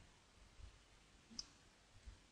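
Near silence, with one faint click of a computer mouse button about one and a half seconds in.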